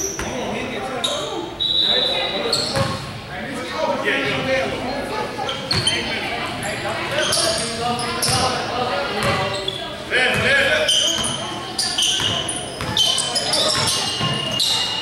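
Basketball bouncing repeatedly on a hardwood gym floor, with short sneaker squeaks and indistinct players' shouts echoing in a large hall.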